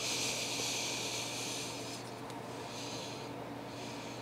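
A soft, steady hiss for about two seconds that then fades, followed by a couple of fainter hisses, over a low steady hum.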